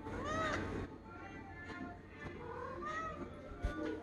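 A domestic cat meowing: one loud meow rising and falling in pitch at the start and a fainter one about three seconds in, over background music. A short knock just before the end.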